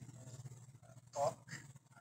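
Faint, brief fragments of a man's voice over a video-call connection, with one short louder sound a little over a second in.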